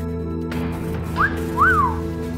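A person's wolf whistle, a short rising note followed by a longer rise-and-fall, over background music with sustained tones.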